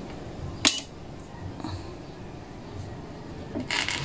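A metal coin-timer box being handled: one sharp click or knock about two-thirds of a second in, then a short rustle near the end as the box is turned.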